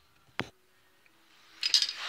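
Handling noise in a metal shop: one sharp click under half a second in, then a short rattle of clicks near the end.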